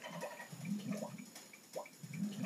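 A young girl's voice murmuring softly, with no clear words.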